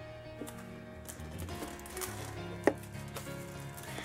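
Soft background music with long held notes, over which plastic shrink wrap crinkles and clicks as it is handled and peeled from a box, with one sharp click a little under three seconds in.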